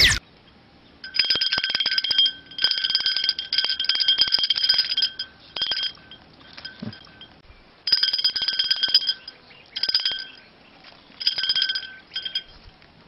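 Small metal bells jingling in short shaken bursts, about six times, with the same bright ringing pitches and rapid clinks each time.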